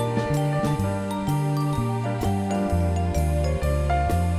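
Live band playing an instrumental passage: a Rickenbacker-style electric bass carries a moving line of notes, changing every half second or so, under sustained chiming keyboard tones and regular drum and cymbal hits.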